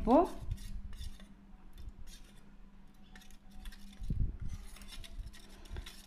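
Metal spoon stirring juice in a small stainless steel bowl, with faint scrapes and scattered light clinks against the metal, and a soft knock about four seconds in.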